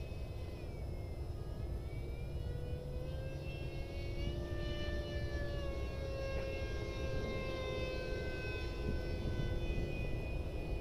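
Electric ducted fan of a 64mm Mig-15 model jet whining in flight overhead, its pitch rising slowly and then falling away.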